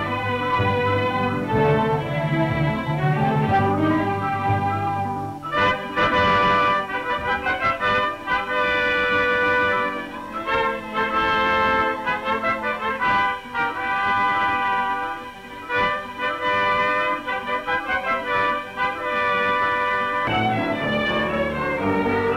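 Orchestral film score with brass to the fore, growing brighter and fuller about five and a half seconds in.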